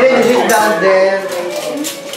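Serving spoons and plates clinking as people help themselves from trays of food, with a few sharp clinks over voices talking.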